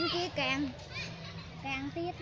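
A child's high-pitched voice speaking in short phrases, over a steady low background hum.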